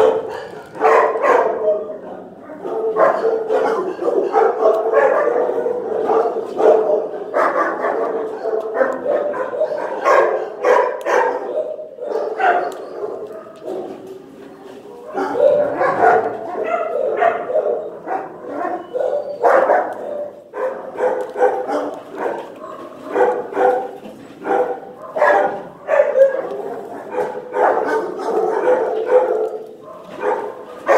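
Shelter dogs barking and yipping almost without pause, many barks overlapping, with a short lull about halfway through.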